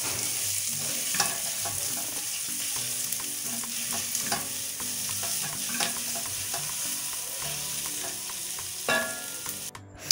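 Chopped red onions sizzling in hot oil in a pot, stirred with a silicone spatula that scrapes and taps against the pot now and then. The sizzle cuts off just before the end.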